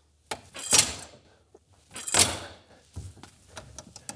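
Steel bar of a home-built salmon ladder jumped upward and landing in its rung brackets on a plywood wall: four knocks over about three seconds, the second and third loudest.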